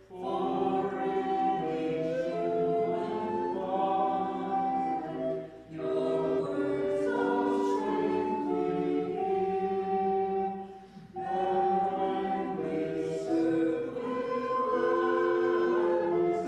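A small group of voices singing a hymn together in phrases of held notes, with short breaks for breath about every five to six seconds.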